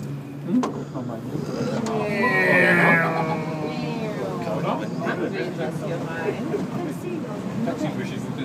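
A steady low hum inside a moving cable car cabin, with people's voices chattering indistinctly over it.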